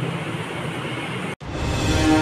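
Room noise with a low steady hum, cut off abruptly about a second and a half in by the start of a news-channel ident jingle: a held musical chord.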